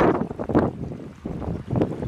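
Muddy floodwater rushing over a rocky stream bed, with wind buffeting the microphone unevenly.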